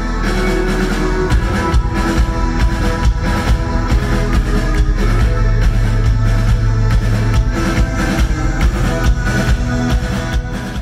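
Live concert recording of a progressive metal band playing a heavy polymetric riff: the drum kit's kick drum keeps steady quarter notes while 8-string guitars and keyboards play a 17-eighth-note-long figure against it.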